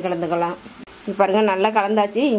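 A woman's voice talking, with a brief pause about half a second in. A low sizzle of onions frying in a pan on the stove runs underneath.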